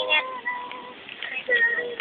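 A child's voice making drawn-out high notes: one held note at the start and another about one and a half seconds in.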